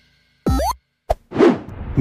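Short edited-in sound effects in a row: a quick sliding blip about half a second in, a sharp click about a second in, then a brief swelling whoosh.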